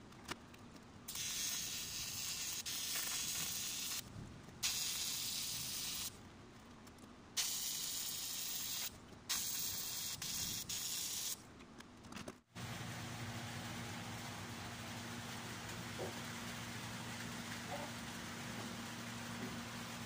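TIG welding arc on an aluminium motorcycle fuel tank, hissing in four bursts of one to three seconds each with short pauses between. About twelve seconds in it gives way to a steady low hum.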